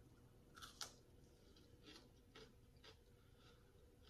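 Faint crunchy bite into a raw red bell pepper filled with cream cheese, the loudest crunch just under a second in, followed by chewing with a crunch about every half second.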